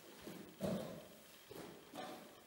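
Bare feet stepping, turning and landing on a dance studio floor: a few soft thuds and scuffs, the loudest just over half a second in.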